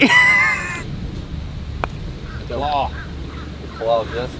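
A putter strikes a golf ball once, a single short click about two seconds in. It is preceded by a loud high-pitched call at the very start, and short voice-like calls follow near the end.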